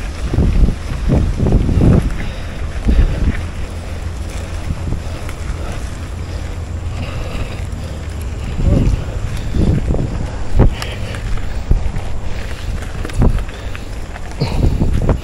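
Wind rushing over the microphone of a handlebar-mounted camera as a mountain bike rolls down a rocky dirt trail, with a steady tyre rumble. Low thumps and rattles come through several times as the bike rides over bumps, most strongly in the first two seconds and again around the middle and near the end.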